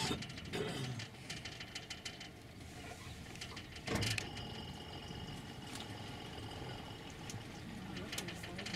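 Tour boat's engine running steadily at idle. There is a short knock right at the start and another about halfway through, and a faint high whine in the second half.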